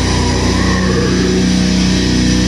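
Heavy metal band playing live: distorted electric guitars and bass hold a loud, steady low chord.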